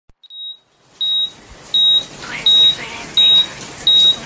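A high electronic beep repeating steadily, one short beep about every 0.7 seconds, the first one fainter than the rest.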